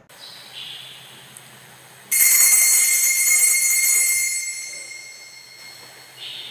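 A small high-pitched bell struck once about two seconds in, ringing on with several clear tones and slowly fading away.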